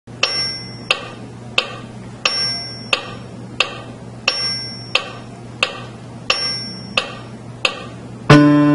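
Metronome clicking steadily, about one and a half clicks a second, with every third click accented by a higher ring, beating waltz time in three. Twelve clicks count in before the piano enters.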